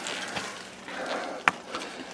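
Faint rustling and handling noise, with one sharp click about a second and a half in.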